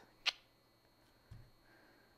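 A single sharp click about a quarter second in, then a faint low thump about a second later, in an otherwise quiet room.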